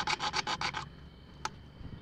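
A thin saw blade rasping back and forth inside a CPVC pipe fitting in quick strokes, about eight a second, cutting out the stub of a broken pipe. The strokes stop just under a second in, and a single light click follows.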